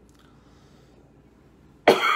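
A man coughs into his hand near the end, after a brief quiet pause: one sudden, loud cough.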